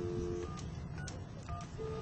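Gate intercom keypad being dialled: a steady two-tone telephone tone cuts off about half a second in, followed by short key-press tones about every half second. Near the end a short beep starts repeating at one pitch.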